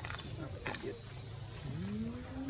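Faint voices over a low steady hum, with a few short clicks early on and a long smooth vocal sound rising in pitch near the end.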